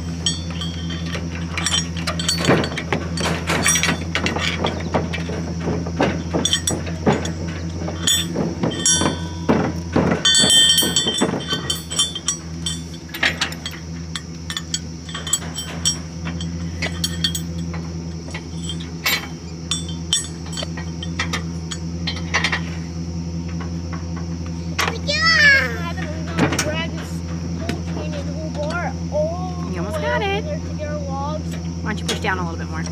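Light metal clinks and clicks as a small metal cup, tray and wire latch are handled and fitted together. They come thick and fast in the first dozen seconds and then thin out, over a steady low hum.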